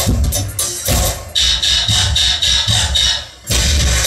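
Loud dance music with a heavy bass beat; it cuts out for a moment shortly before the end, then comes back in.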